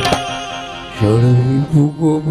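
Live Gujarati devotional bhajan music. The tabla playing ends on a final stroke at the start. Harmonium notes are held, and about a second in a male voice comes in with a long sung note that bends in pitch over the harmonium.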